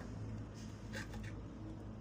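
A few light scrapes and clicks about a second in, over a steady low hum.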